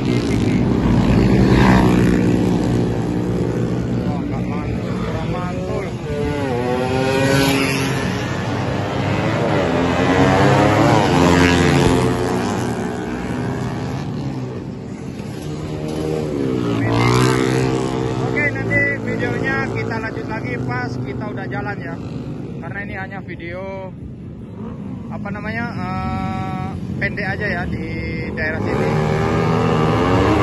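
Motorcycles speeding past one after another at high revs in a street race, each engine note swooping up and then down in pitch as it goes by. Several loud passes come in the first twenty seconds, a quieter stretch follows, and the engines grow louder again near the end.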